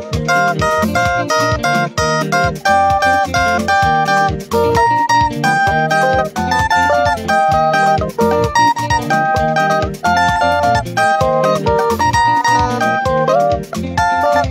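Stratocaster-style electric guitar playing a quick, melodic lead line of single notes.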